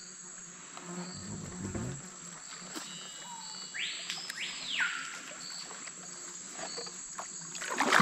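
Steady high-pitched insect buzz, cicada- or cricket-like, from riverbank forest. About halfway through, a brief louder whistle rises and then falls.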